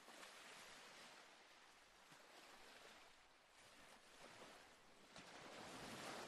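Faint ocean surf washing up a beach, a steady rush of water that swells and eases, loudest near the end.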